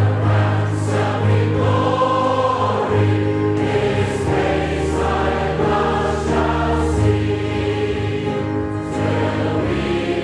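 Choir singing a hymn, with long held notes over a steady low accompaniment.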